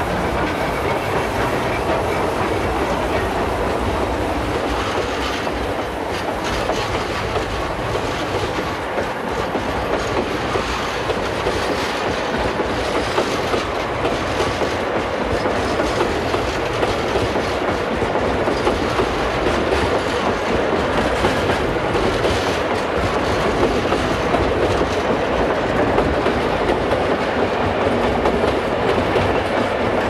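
Recording of a JNR Class C62 steam-hauled train under way, played from a 1971 vinyl LP: a steady, dense running noise that holds level throughout.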